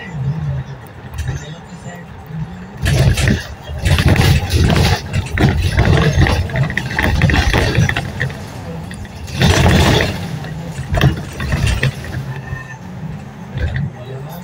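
Road and engine noise inside a moving vehicle at highway speed, with indistinct voices talking under it; the noise grows louder for a stretch from about three seconds in and again briefly around ten seconds.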